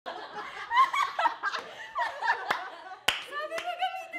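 A small group of people chattering and laughing over one another, with a sharp clap about three seconds in, followed by a drawn-out vocal sound.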